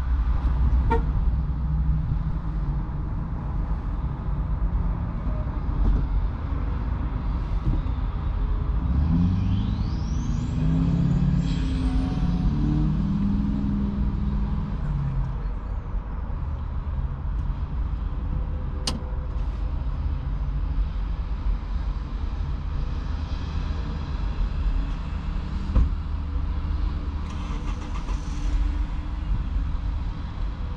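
Steady low rumble of a stationary vehicle's engine idling, heard from inside the cab. About a third of the way in, a louder engine sound wavers up and down in pitch for several seconds, and a single sharp click comes a little past the middle.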